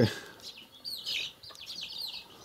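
Small birds chirping: a steady stream of short, high peeps, several a second, a little louder about a second in.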